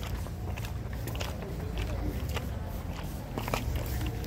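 Irregular light clicks and taps over a steady low rumble: handling noise and footsteps as a handheld camera is carried at walking pace over stone paving.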